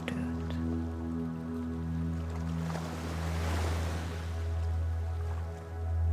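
Calm ambient meditation music, a steady low drone under long held notes, with the sound of an ocean wave washing in on the shore that swells up in the middle and fades away again.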